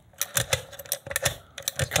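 Key working in an old Eagle Lock five-pin cylinder, a scatter of light metallic clicks as it is turned and jiggled in the lock.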